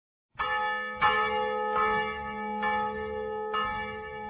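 A bell struck five times, a little under a second apart, each strike ringing on until the next.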